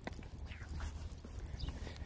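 Footsteps on asphalt pavement, soft and faint, with wind rumbling on the phone's microphone.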